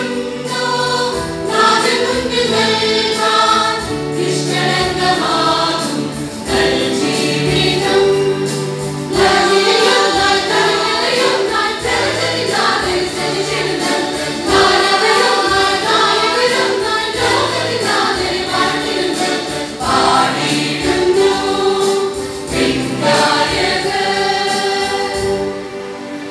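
Choir singing a Malayalam church song to musical accompaniment with a steady beat, easing off slightly at the very end.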